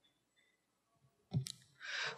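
A pause in a talk over a microphone: near quiet, then one short, sharp click about one and a half seconds in, followed by a soft breath just before speech resumes.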